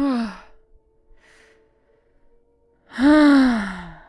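A person's loud voiced sigh about three seconds in, falling steadily in pitch, with a shorter falling vocal sound right at the start.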